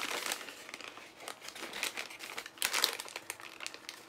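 Packaging being crinkled as a taiyaki is unwrapped: irregular crinkles and crackles, loudest a little past two and a half seconds in.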